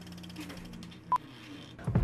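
A single short electronic beep about a second in, over a low steady hum.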